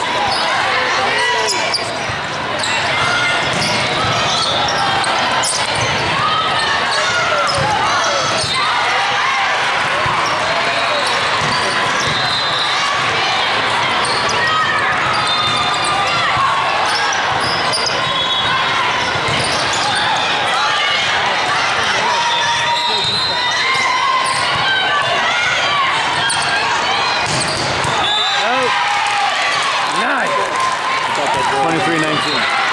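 Many overlapping voices of volleyball players and spectators calling and shouting over each other, with the smack of a volleyball being passed and hit now and then.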